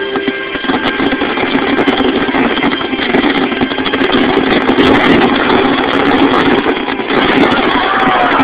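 Fireworks finale: a dense, continuous barrage of shells bursting and crackling, with many sharp reports run together into a rumbling roar, heard through a phone's small microphone. The show's music fades out under it in the first second.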